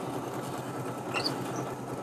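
Drill press running with a 9/32-inch twist bit boring into a wooden block, a steady motor hum under the even noise of the bit cutting the wood as it drills out a smaller hole.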